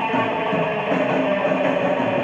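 Electric guitar playing a run of short, quickly changing notes.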